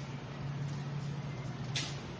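A steady low mechanical hum under faint background noise, with a brief hiss near the end.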